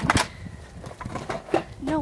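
Two quick knocks as an old corded telephone handset is hung up, with wind rumbling on the microphone; a woman says "No" near the end.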